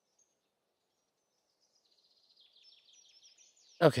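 Faint birdsong: a quick series of high chirps that starts about halfway through, after a near-silent first half. A man's voice says "Okay" at the very end.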